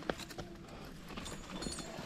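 A climber's shoes and gear knocking and scuffing against the rock as he moves his feet: a few sharp knocks, then some light clinks near the end.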